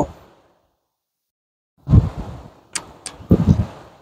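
Handling noises from hands working at a car's front brake caliper and rotor, starting about two seconds in: a dull thump, two sharp clicks, then another dull thump.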